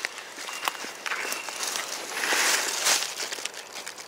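Rustling and light crackling of forest undergrowth and leaf litter as someone moves among ferns close to the ground, with a louder swell of rustling about two to three seconds in.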